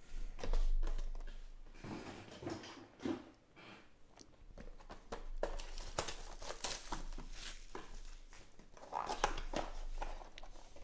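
Hands handling and opening a cardboard trading-card box (2020 Topps UFC Striking Signatures): scattered rustling, scraping and small clicks of cardboard and paper as the box is turned over, its flap opened and the paper insert pulled back.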